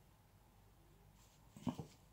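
Near silence, then about a second and a half in, two short, faint whimper-like sounds from a man whose ear is being pulled.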